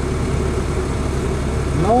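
Off-road vehicle's engine idling, heard from inside the cab: a steady, even low rumble.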